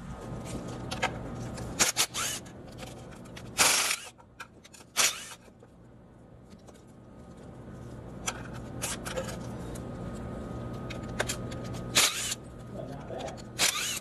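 Cordless ratchet run in a series of short bursts on bolts, the loudest burst just under four seconds in, over a steady low hum.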